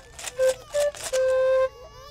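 A homemade bamboo pan flute playing three notes, two short and then a longer held one, mixed with quick rattles of a homemade cardboard-tube shaker.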